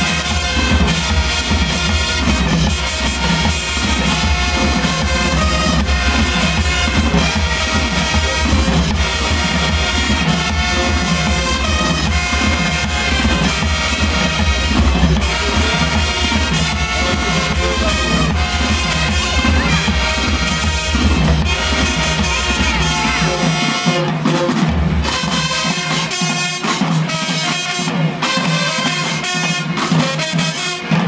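Marching band playing loudly: brass horns over drums, with a heavy deep bass that drops out about 24 seconds in while the horns carry on.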